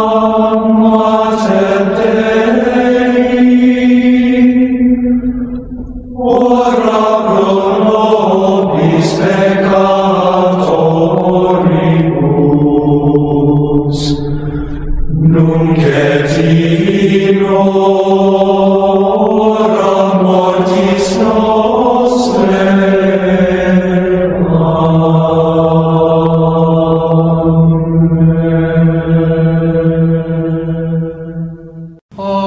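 Gregorian chant: voices chanting slow, sustained lines, with short breaks between phrases about five and fifteen seconds in.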